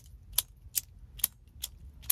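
All-titanium Grimsmo Saga pen's sliding mechanism being worked over and over as a fidget, its tip popping out each time. It makes five sharp metal clicks, evenly spaced at about two and a half a second.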